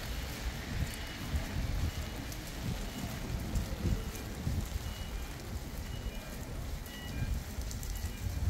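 Street ambience in the rain: a steady hiss of rain and wet paving, under an uneven low rumble.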